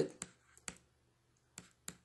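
A handful of short, separate clicks of a stylus tapping on a tablet screen while handwriting, with stillness between them.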